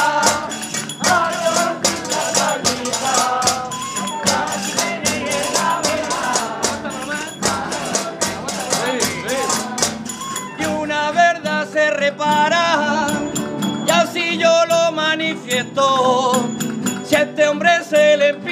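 Spanish folk music in the aguilando tradition of Aledo, Murcia: a group plays with a rapid, even percussion beat. About ten seconds in, a voice begins singing a wavering, ornamented melody over it.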